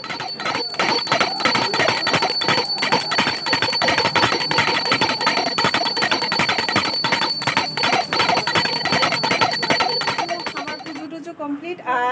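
Small brass puja hand bell rung rapidly and continuously, with a sustained high ringing tone over the fast strikes; it stops about a second before the end.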